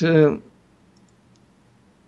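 A man's voice drawing out the end of a word in the first half-second, then a pause of near silence with a few faint clicks.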